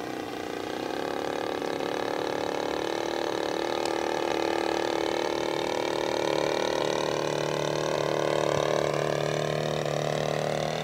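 RCGF 30cc two-stroke gas engine with a Pitts-style muffler, turning an 18x8 propeller on a radio-controlled Sbach 342, running steadily in flight. It grows louder as the plane comes closer, and its pitch edges up slightly in the second half.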